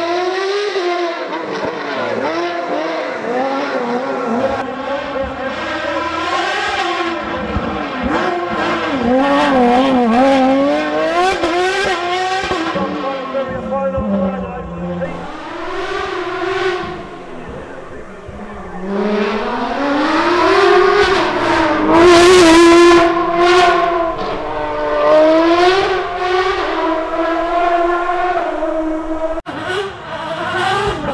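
Naturally aspirated Formula Renault 3.5 V6 race engine at high revs, its pitch climbing and dropping with gear changes and braking between corners. It fades away about halfway through, then comes back louder and is loudest a little past two-thirds in.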